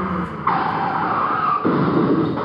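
A recorded car sound effect, engine and tyres, played over the hall's loudspeakers, with the dull, treble-less sound of a played-back recording. It grows louder about half a second in.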